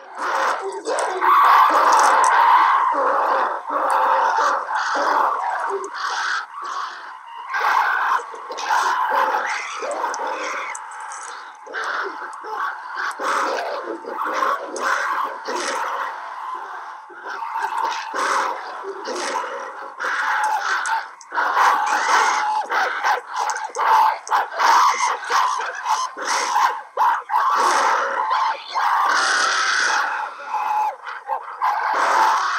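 A film soundtrack of a troop of man-apes calling and screaming over one another, a dense, uneven chorus of ape cries.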